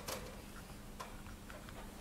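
A few faint, irregular clicks, one about a second in, from a plastic ruler being set against a whiteboard, over a low steady hum.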